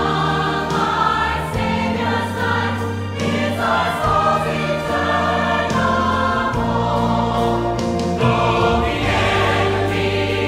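Mixed church choir singing a hymn in full voice, with steady low notes held underneath that change every second or two.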